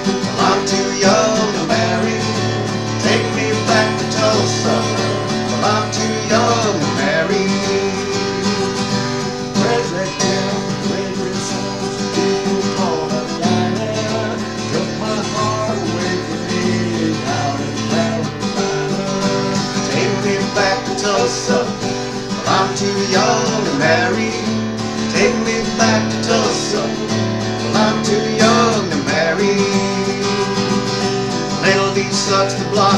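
Acoustic guitar strummed in a steady western swing rhythm during an instrumental stretch of the song.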